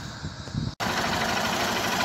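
Faint background rumble, then an abrupt cut about a second in to a Honda Titan 150's single-cylinder four-stroke engine idling steadily.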